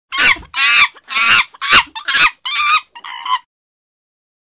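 A run of about seven short, loud, high-pitched animal calls in quick succession, roughly two a second, stopping about three and a half seconds in.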